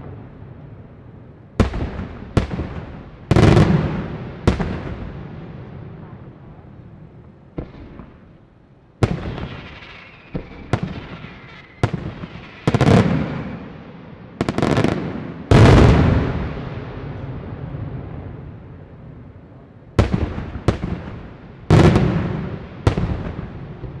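Aerial firework shells bursting one after another in a display: about fifteen sharp bangs at uneven intervals, some in quick pairs, each followed by a long rolling echo that dies away.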